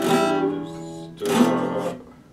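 Epiphone acoustic-electric guitar strummed: two chords a little over a second apart, the first ringing down and the second stopping suddenly at the end.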